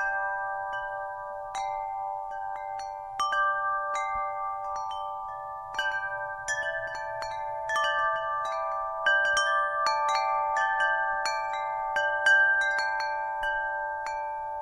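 Chimes ringing: irregular, overlapping strikes of several metal tones, each ringing on after it is struck.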